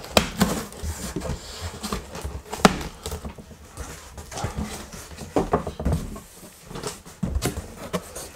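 Large cardboard shipping box being opened by hand: flaps pulled open, with irregular scraping and rustling of cardboard and a few sharp knocks.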